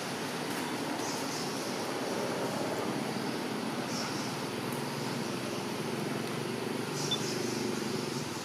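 Steady background rumble of distant road traffic, with a few faint high-pitched sounds now and then.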